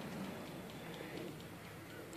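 Quiet outdoor background: a faint, even hiss of ambient noise with no distinct event.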